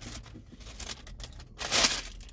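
Paper wrapper rustling and being crumpled in the hands, with one louder crinkle near the end.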